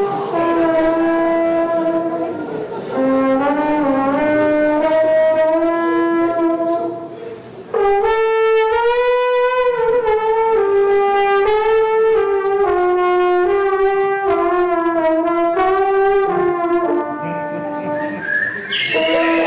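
Solo trombone playing a slow melody of held notes, sliding between some of them. About eight seconds in, after a brief dip, it comes in louder on a long note with vibrato.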